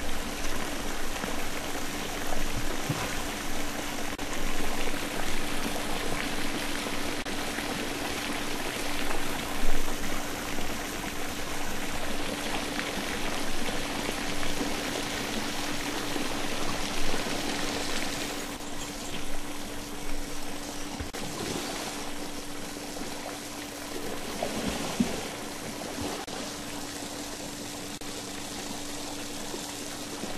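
Water running and splashing into a shallow pool in a jaguar enclosure, a steady rush that swells and eases, with a faint constant hum beneath it.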